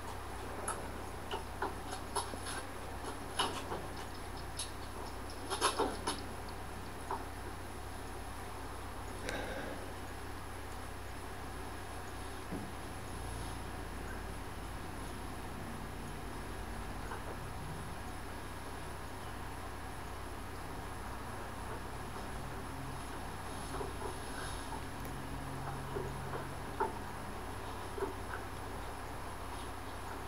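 Scattered light metallic clicks and taps of a steel winch cable end being worked by hand into the drum bracket of a hand-crank trailer winch, clustered in the first several seconds and again near the end, over a steady low hum.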